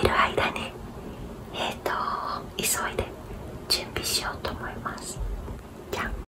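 A woman whispering close to the microphone, in breathy, unvoiced speech.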